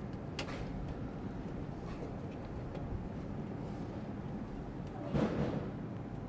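Handling noises of a clamp meter being fitted around a battery cable in a truck's battery box: a click about half a second in and a louder scrape and rustle near the end, over a steady low hum.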